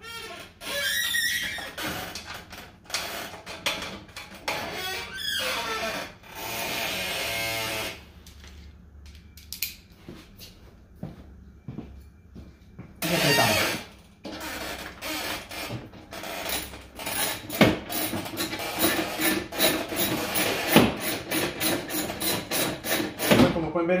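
Cordless drill driving a screw in short runs, the longest a steady run of about two seconds, with knocks of tools between. In the second half, background music with a steady beat.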